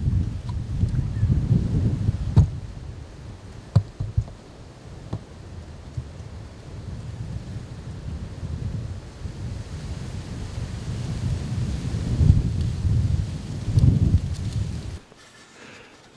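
Wind buffeting an outdoor camera microphone as a low, gusting rumble, with a few sharp clicks a couple of seconds in. The rumble cuts off about a second before the end.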